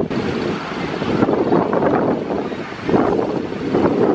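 Wind buffeting the microphone in gusts, over the wash of waves breaking on the shore.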